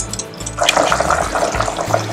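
Water bubbling at a rolling boil in a steel pot of meat and cubed potatoes, starting about half a second in.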